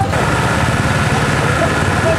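Motorcycle engines idling steadily, with faint crowd voices mixed in.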